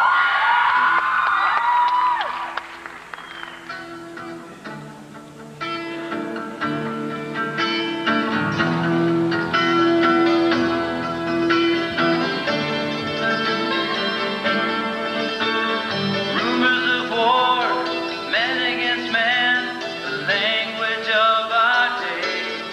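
Live solo acoustic music on a stringed instrument as a song gets under way: a couple of seconds of sliding high-pitched sounds, a brief lull, then ringing plucked or struck notes, with a man's voice singing over them near the end.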